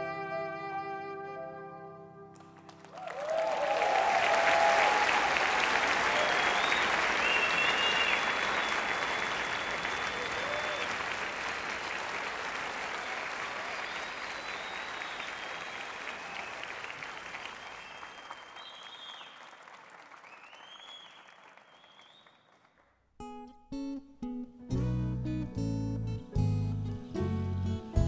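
A song's last held chord fades, and the audience applauds and cheers for about twenty seconds, the applause slowly dying away. Near the end a new song begins with separate plucked acoustic-guitar notes, soon joined by bass.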